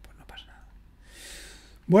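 A man's breath in, a soft hiss lasting nearly a second, just before he starts talking again near the end; a few faint clicks come before it.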